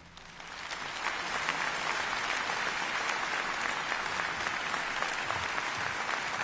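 Audience applauding after the final number, swelling up within the first second and then holding steady.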